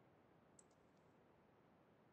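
Near silence: room tone, with one faint short click a little over half a second in.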